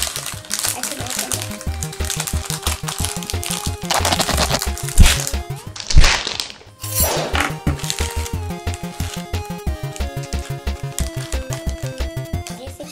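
Background music with a steady beat runs throughout. About four to seven seconds in, a foil blind bag crinkles loudly as it is pulled and tugged at to tear it open, with two sharp crackles a second apart as the loudest moments.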